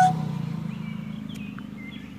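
Faint bird chirps, several short calls starting a little way in, over a low steady hum that fades away.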